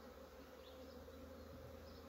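Faint, steady buzzing of honeybees flying around an opened hive.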